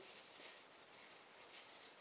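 Near silence, with faint, soft rustles of a thin square of toilet paper being folded and handled between the fingers.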